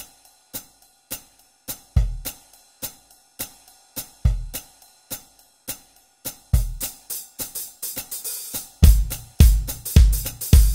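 Instrumental song intro carried by a drum beat: cymbal or hi-hat strokes about twice a second with a heavier bass-drum hit every couple of seconds. Near the end the drumming grows busier and louder.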